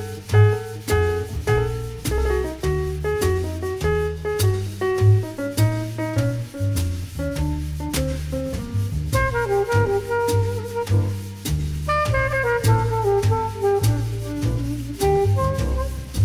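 Instrumental chorus of a swing-jazz quartet recording with no singing: walking bass and drums keep the beat under piano and saxophone, with falling saxophone runs from about nine seconds in.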